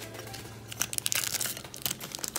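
Foil booster pack wrapper crinkling as it is handled, with small clicks from a metal mini tin being turned over in the hands; the crinkles and clicks grow busier about halfway through.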